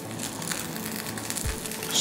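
Jaggery being crumbled by hand and dropped into a pan of liquid, with a dull thump about one and a half seconds in, over faint background music.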